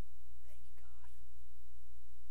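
A steady low hum throughout, with a faint, brief murmured voice about half a second in.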